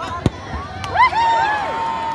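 A football struck hard in a free kick: a single sharp thud about a quarter second in. About a second in, several voices break into loud shouting.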